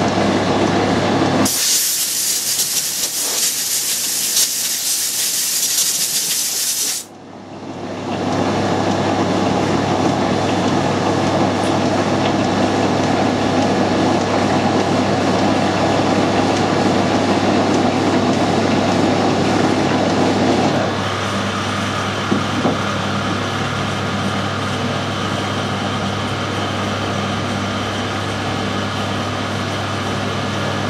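Metal lathe running with a steady hum while turning a threaded part. About two seconds in, a loud steady hiss takes over for about five seconds, then the lathe's hum rises back. After about twenty seconds the running sound becomes lighter and steadier.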